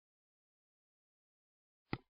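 Near silence: the sound track is blank, broken by one brief click near the end.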